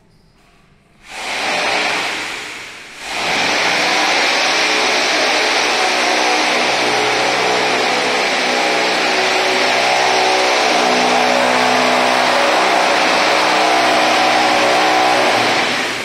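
An electric power tool starts up about a second in, eases off briefly, then runs steadily and loudly for the rest of the time.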